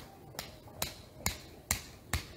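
Sharp, evenly spaced clicks or knocks, a little over two a second, in a steady rhythm.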